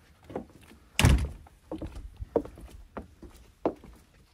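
A door swinging open with a loud thump about a second in, followed by footsteps on a wooden deck, about one step every two-thirds of a second.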